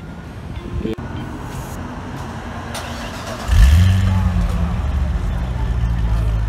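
Chevrolet Corvette ZR1's supercharged 6.2-litre V8 starting about three and a half seconds in: a short flare, then it settles into a steady, deep idle. A fairly calm start-up.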